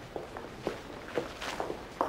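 Footsteps: about six light, unevenly spaced steps.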